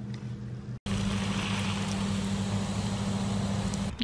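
A steady low hum under an even hiss, starting abruptly about a second in after a brief quieter stretch.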